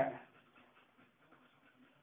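A woman's voice trailing off at the start, then near silence: room tone.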